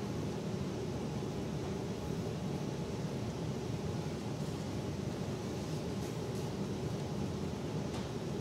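Steady background hiss of room noise, with no distinct events.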